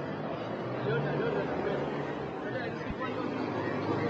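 Indistinct chatter of several people over steady outdoor background noise.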